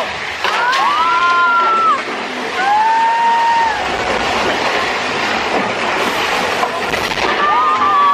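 Amusement-park ride running with a steady rushing rumble, with drawn-out high voices over it: several long notes that rise, hold and fall, two in the first two seconds, one about three seconds in and more near the end.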